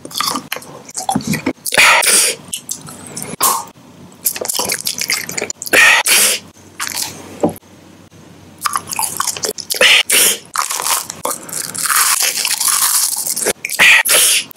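Close-miked mouth eating sounds: candy and gum being bitten, crunched and chewed. There are irregular sharp bites and crackles, several of them loud, and a denser run of crunching and crackling in the second half.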